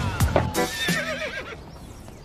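Background music ending in a wavering, whinny-like flourish, after a few quick clicks and falling glides; it fades out about one and a half seconds in.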